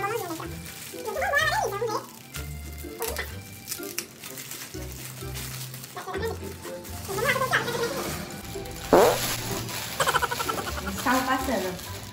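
Background music and short bits of voice, with the crinkling and tearing of a chocolate Easter egg's foil and plastic wrapping, loudest about nine seconds in.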